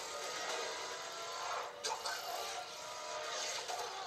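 Motorcycle chase sound effects from a film, heard through a television's speaker: a motorcycle engine running under road noise, with one sharp crack about two seconds in.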